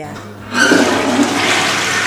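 Toilet flushing after its dual-flush cistern button is pressed: a rush of water starts about half a second in and keeps on.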